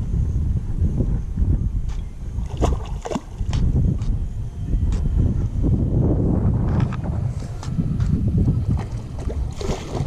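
Steady low rumble of wind and water against the boat, with scattered light clicks and knocks from handling a baitcasting rod and reel while a fish is being wound in.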